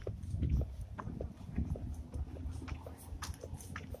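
Footsteps walking over dry fallen leaves, an irregular crackling crunch several times a second, over a low rumble from the handheld camera moving.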